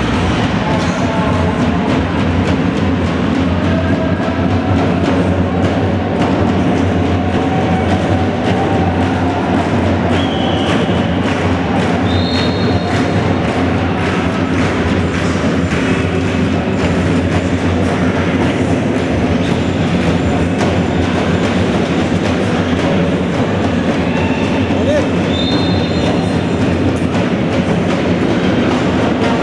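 Steady crowd din in an echoing indoor sports hall during a handball game, with a short high whistle blast about twelve seconds in and again near the end.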